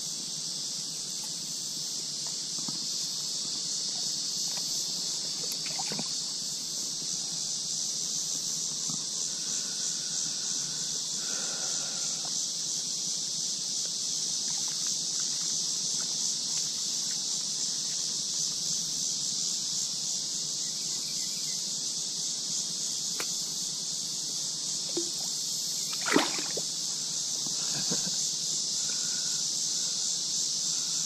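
Steady high-pitched drone of summer insects, unbroken throughout, with a few light handling clicks and one sharp knock or splash near the end.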